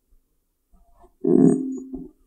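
Handheld microphone being handled and moved into place in front of the desk microphone, giving a short low rumbling thump through the PA about a second in, with a steady low hum ringing under it as it fades.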